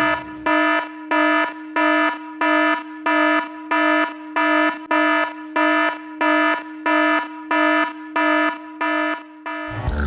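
An electronic alarm beeping on one steady pitch, about three beeps every two seconds with each beep about half a second long, stopping just before the end.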